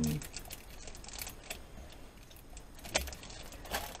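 Plastic packaging of a clear stamp sheet crinkling and rustling in small crisp clicks as it is handled and slid across a table, with one sharper click about three seconds in.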